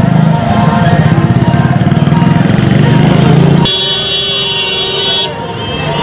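A motorcycle engine running close by with a fast low pulsing. Just past halfway a vehicle horn sounds one steady honk of about a second and a half.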